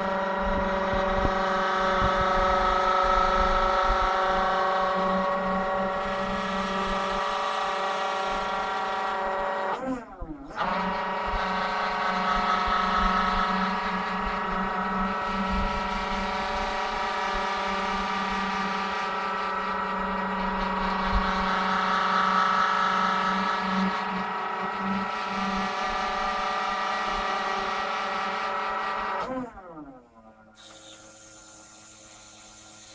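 Forklift hydraulic pump running steadily to power a clamp-on drum rotator as it turns a steel drum over. The pump winds down in pitch and restarts about ten seconds in, then winds down to a stop near the end.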